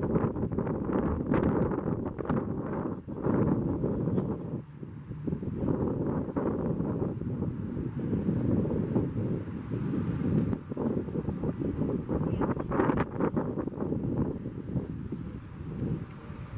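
Wind buffeting the microphone: a fluctuating low rumble of noise that swells and dips throughout.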